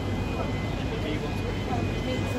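City street ambience: a steady rumble of traffic mixed with the voices of passers-by.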